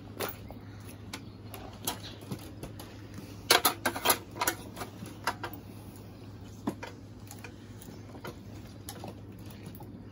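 Scattered light clicks and knocks from handling a rabbit carcass on its hangers while butchering, with a cluster of sharper ones about three and a half seconds in, over a steady low hum.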